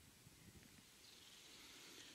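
Near silence: faint outdoor background hiss.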